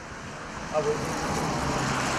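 Road traffic: a vehicle passing on the street, its tyre and engine noise swelling about a second in and holding steady.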